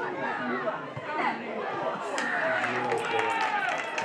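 Several voices shouting and calling over one another across a football pitch, with a cluster of sharp clicks in the second half.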